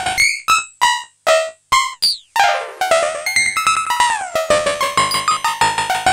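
Synton Fenix 2 modular synthesizer playing short pitched notes through its bucket-brigade (BBD) delay while negative control voltage is applied to the delay's time input. The first two seconds hold separate notes with brief gaps between them. About two seconds in comes a falling pitch sweep, and then quick repeating echoes fill the rest.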